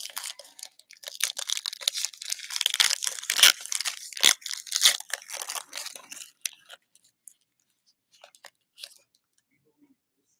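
Foil wrapper of a trading-card pack torn and crinkled open by hand for about six and a half seconds, then a few faint ticks as the stack of cards is pulled out and handled.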